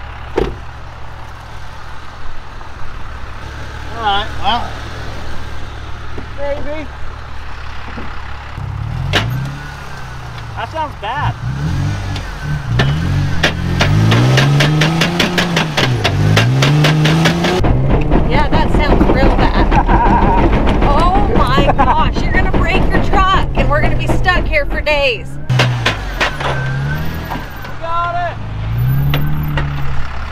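Toyota Tacoma pickup engine idling, then revving up and down again and again from about nine seconds in as the truck spins its tyres in sand under the load of a boat trailer. A fast clatter runs through the middle of the revving. The truck has a front hub that has just broken.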